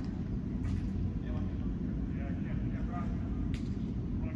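Faint, distant shouts of players in an indoor soccer game over a steady low rumble, with two sharp knocks, one under a second in and one near the end.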